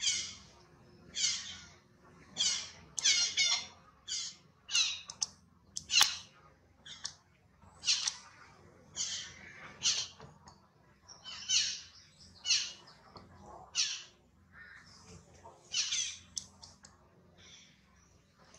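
Baby long-tailed macaque screaming in distress: short, shrill cries repeated about once a second, some in quick runs of two or three.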